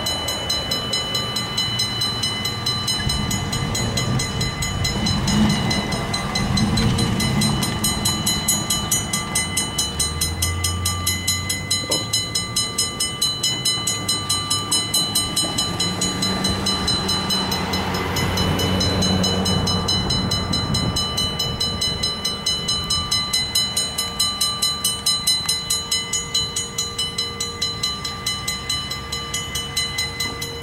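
Railroad crossing signal bell ringing in fast, even strokes while the crossing is active, with a low rumble of a vehicle passing around the middle.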